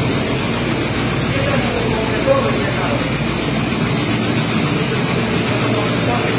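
Oxygen plant compressors running with a loud, steady mechanical noise, including a high-pressure booster compressor filling medical oxygen cylinders.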